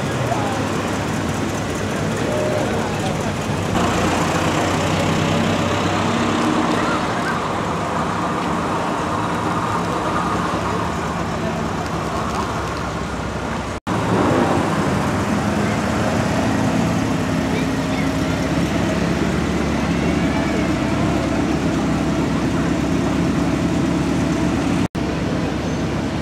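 Classic cars driving slowly past at low revs, their engines running steadily, over chatter from a roadside crowd. The sound breaks off abruptly twice where the recording is cut.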